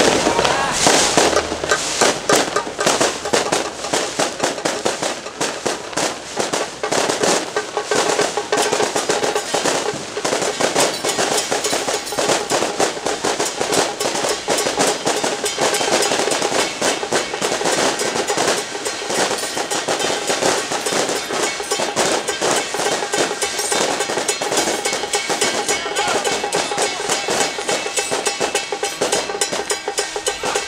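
Song Jiang battle-array troupe's percussion, drum and cymbals beaten loudly in a fast, dense stream of strikes with some ringing tones, accompanying the martial drill.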